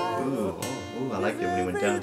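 A man singing a slow pop ballad over acoustic guitar.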